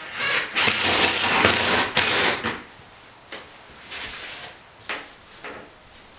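Cordless drill-driver running for about two and a half seconds, driving a screw into wood to fit a self-closing door hinge, followed by a few short knocks and clicks.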